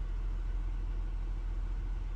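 A Lexus RX 350's V6 engine idling, heard from inside the cabin as a steady low hum.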